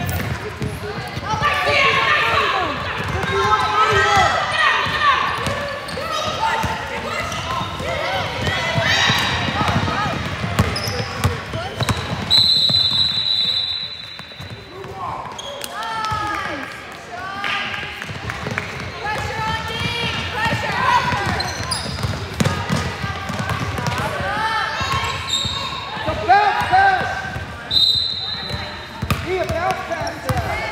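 Basketball game in a gym: a ball dribbling on the hardwood court amid shouting voices, with a referee's whistle blowing one long blast about twelve seconds in and a short one near the end.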